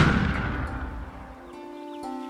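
A whooshing transition sound effect with a low rumble fades away, and about one and a half seconds in, soft plucked-string background music begins.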